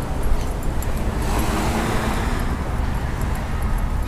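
A car passing on the street, its tyre and engine noise swelling and fading over about two seconds, over a steady low rumble.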